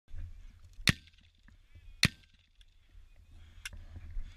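Two loud, sharp cracks about a second apart and a fainter one near the end, over a steady low rumble.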